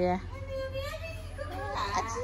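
A small child's voice vocalising in long, high-pitched gliding sounds, with a short louder cry-like burst near the end.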